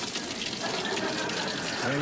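Shower running: a steady hiss of spraying water.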